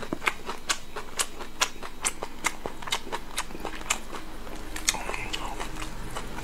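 Close-miked wet chewing and lip-smacking of a person eating fatty braised meat, in evenly spaced smacks about two a second.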